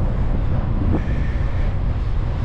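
Wind buffeting the microphone of a bicycle-mounted camera while riding, a steady low rumble.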